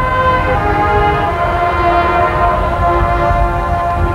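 Marching band brass holding long, loud chords that shift pitch a few times, over a low rumble from the outdoor stadium recording.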